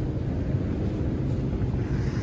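Steady low background rumble of a large store interior, with no distinct events.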